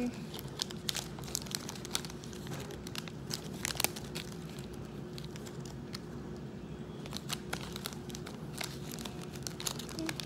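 A shiny plastic snack wrapper crinkling and crackling in the hands in scattered short bursts as it is twisted and picked at to get it open.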